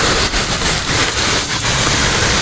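Garden pressure sprayer's wand nozzle hissing steadily as it sprays a fine mist onto a currant bush.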